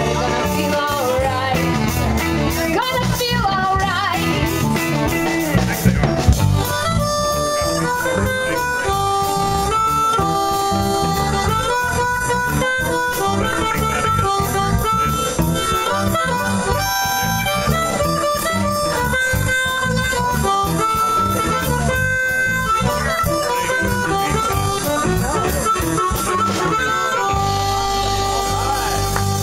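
Live blues band playing: electric guitar, keyboard, bass and drums. From about seven seconds in, an amplified harmonica, cupped against a microphone, plays a solo of held and repeated notes over the band.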